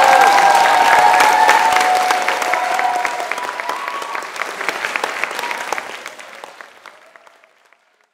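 Audience applauding after the piece ends, with a few voices cheering over the clapping in the first three seconds; the applause fades away toward the end.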